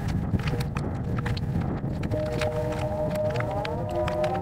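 Strong wind buffeting the microphone: a loud, rough low rumble with scattered clicks. About halfway through, several sustained tones come in and begin to glide in pitch near the end.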